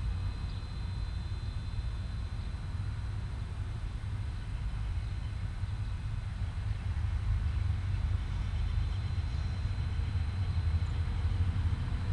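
A steady, low engine-like rumble, with a few faint steady high tones above it.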